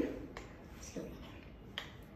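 Spoon scraping and tapping against a mixing bowl as chocolate cake batter is worked out of it: three faint, short clicks.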